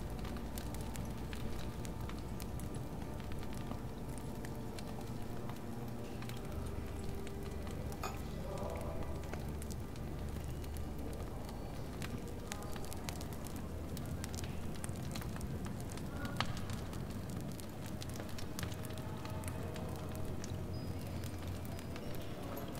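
Fireplace fire crackling, with frequent small pops and snaps over a steady low rumble.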